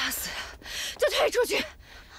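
A woman speaking a short, tense line in Mandarin, preceded by a breathy, noisy sound at the start.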